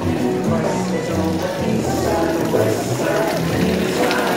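Music playing, with a bass line stepping between notes about twice a second.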